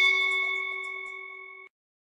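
Notification-bell 'ding' sound effect from a subscribe-button animation, ringing out in several tones and fading, then cut off abruptly about a second and a half in.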